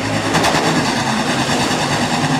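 A pack of USRA Hobby Stock race cars running hard together as the field accelerates away on a green-flag restart, their engines blending into one steady, loud drone.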